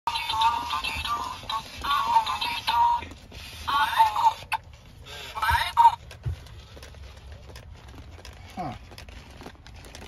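Furby toys chattering and singing in high-pitched electronic voices, in short broken bursts that stop about six seconds in.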